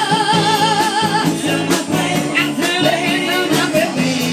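Live band music: a woman singing, holding one long wavering note for about the first second before moving on to shorter phrases, over electric guitar, keyboard and drums.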